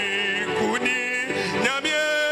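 A man sings a hymn into a microphone. He holds a note with vibrato, then slides between notes, over sustained electronic keyboard chords.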